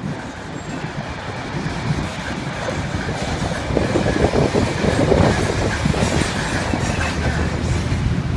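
Vintage streetcar, Muni car No. 1, rolling along its track with its wheels rumbling and clattering on the rails. It grows steadily louder as it approaches.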